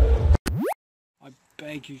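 Loud bass-heavy party music cuts off abruptly, followed at once by a short sound effect that sweeps quickly upward in pitch, marking an edit between clips. A second of near silence follows before a man starts talking near the end.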